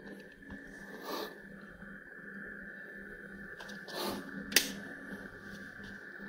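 Two short breaths out through the nose, about a second in and about four seconds in, with a sharp click soon after the second, over a steady room hum.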